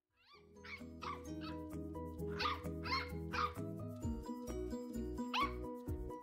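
Corgi puppy giving a string of short, high yips, about eight of them, over background music that picks up a steady beat about two thirds of the way in.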